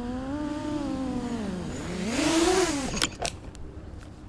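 A 6-inch FPV quadcopter's four brushless motors (Hyperlite 2205.5 1922KV spinning 6x4x2 props) whine, their pitch rising and falling with the throttle. About two seconds in, the throttle is chopped and then punched, and the pitch climbs. Near three seconds the pitch drops away with a few knocks as the quad comes down in the grass.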